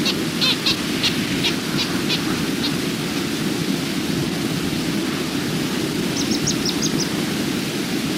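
Outdoor nature ambience: a steady low rushing noise with a bird calling in short series of high chirps, one run of about eight notes over the first three seconds and another of about six notes about six seconds in.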